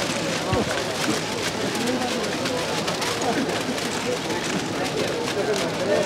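Indistinct chatter of many overlapping voices at steady strength, with frequent faint clicks running through it.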